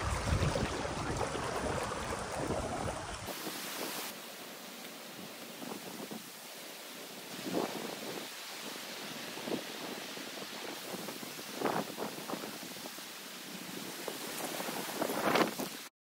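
Wind buffeting the microphone for the first few seconds, then a steady rush of water flowing fast down a channel drained through an opened beaver dam, with a few brief louder surges. It cuts off suddenly at the very end.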